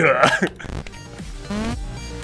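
A brief burst of a man's laughter, then background music starts up about half a second in and carries on as a steady series of notes.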